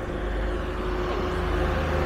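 Street traffic noise: vehicles running along the road, a steady rumble with a constant droning tone.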